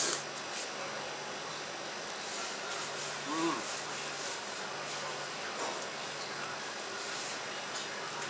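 A man eating noodles: a short slurp right at the start, then a steady background hum and hiss, with a brief voiced "mm" about three seconds in.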